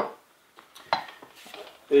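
Steel carving disc and angle grinder set down on a wooden workbench: one sharp metallic clack, then a lighter knock about a second later.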